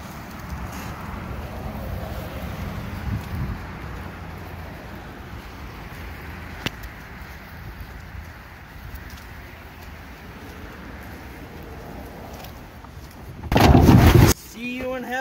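A molded car floor carpet dragged across concrete and grass, a rough, steady scraping rustle. A loud burst of noise comes near the end.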